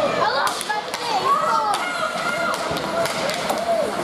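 Ice rink crowd noise: many voices calling and shouting over one another, with several sharp clacks of hockey sticks on the puck and ice as play starts from a face-off.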